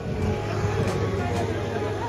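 Street ambience of people's voices with a steady low hum, under quiet background music.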